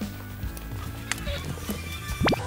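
Quiet background music with three footsteps at a walking pace, about every half second or so, on a concrete floor.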